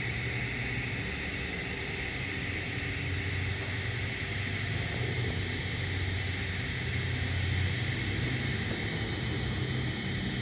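TIG welding arc on 2-inch schedule 10 stainless steel pipe, burning at about 55 amps: a steady hiss with a low hum underneath, as filler wire is dipped into the keyhole of the root pass.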